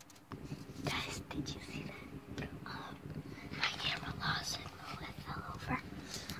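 A person whispering, starting a moment in.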